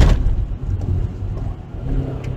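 Inside the cabin of a Mazda 3 with its 1.6 MZR four-cylinder petrol engine, slowing off-throttle from about 90 to under 80 km/h on a wet road: a steady low engine and road rumble. A brief loud thump comes right at the start.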